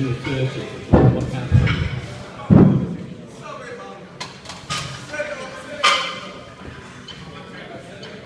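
Heavy low thuds as a loaded barbell is lifted out of a squat rack and the lifter steps back on the platform, three thumps in the first few seconds, followed by shouted voices ringing in a large hall.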